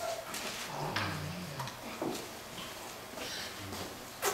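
A few sharp taps, about a second and two seconds in, and short wordless murmurs of a person's voice that rise and fall.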